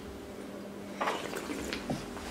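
A man sipping and slurping wine from a glass: a short run of wet, hissy sucking sounds starting about a second in, over a steady faint room hum.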